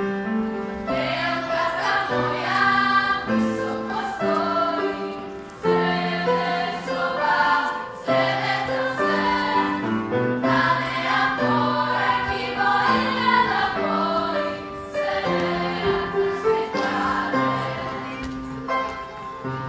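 Children's choir singing a song in unison phrases over music accompaniment.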